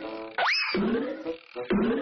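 Cartoon spring 'boing' sound effects for a kangaroo's hops, about one a second, each bending upward in pitch. A rising whistle glide comes about half a second in.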